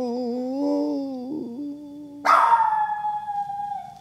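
A man's singing voice holding out the last note of a mock love song, a long wavering note that breaks off about a second and a half in. About two seconds in, a second, higher tone starts suddenly and slides slowly down as it fades.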